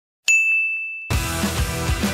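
A single bright, bell-like ding sounds about a quarter second in and rings out for under a second. About a second in, music with a steady beat starts.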